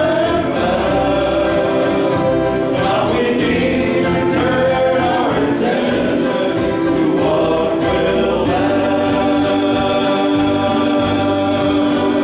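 Men's band singing a gospel song in harmony, with acoustic guitar and keyboard accompaniment and long held chords toward the end.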